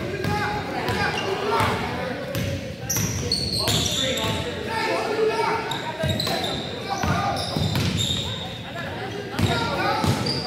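A basketball being dribbled on a hardwood gym floor, with sneakers squeaking and voices from players and spectators echoing in the gym.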